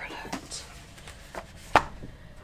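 Paper being handled on a cutting mat: soft rustles and light taps, then a thick instruction booklet set down with one sharp slap near the end.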